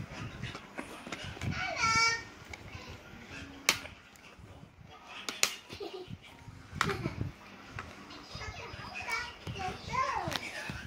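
Children's voices in the background, one child calling out in a long high voice about two seconds in. Three sharp plastic clacks from DVD cases being handled come in the middle.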